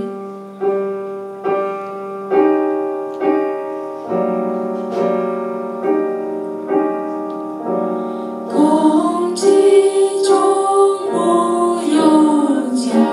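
Stage piano playing a steady pulse of chords, a little faster than one a second. About eight and a half seconds in, a woman's singing voice comes in over the piano.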